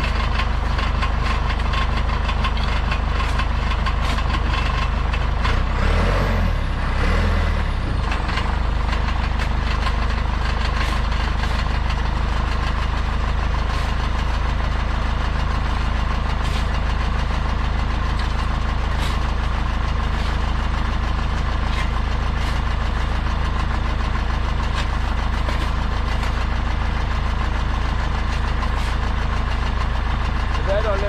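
Engine of an earth-moving machine idling steadily, a deep continuous drone that wavers briefly about six seconds in.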